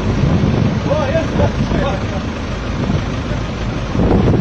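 A vehicle engine running steadily under a low rumble, with people's voices calling out in the background.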